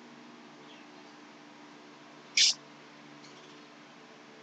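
Steady low hum of room tone, with one short high-pitched sound about two and a half seconds in.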